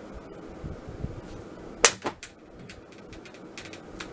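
Electric fan running steadily, with a quick cluster of three sharp clicks a little under two seconds in and a few fainter ticks near the end.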